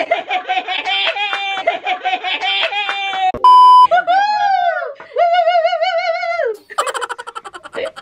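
A young woman laughing hard in quick, high-pitched bursts for about three seconds, cut by a short, loud single-pitch beep like a censor bleep. A rising-and-falling glide and a wavering held note follow, and the laughter resumes near the end.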